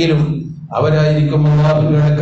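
A male preacher's voice in a chant-like, intoned recitation with long held notes. It breaks off briefly about half a second in and then resumes.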